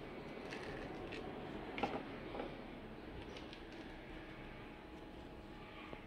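Quiet room tone with a few faint, light clicks and taps spread through the first half, the small sounds of handling in a kitchen.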